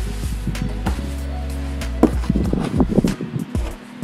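Background music with held chords. About halfway through come light rustles and soft knocks as fabric is moved on a table.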